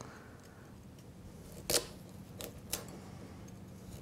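Small kitchen knife cutting lengthwise through a chunk of raw carrot on a wooden cutting board: a sharp crack a little under two seconds in, followed by two fainter clicks.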